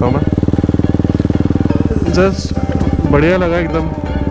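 KTM Duke 200's single-cylinder engine running steadily at cruising speed, its firing pulses even and unbroken, with a man's voice speaking briefly over it in the second half.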